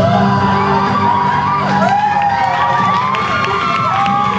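Music playing while the audience cheers and whoops, with several rising-and-falling whoops from about a second and a half in.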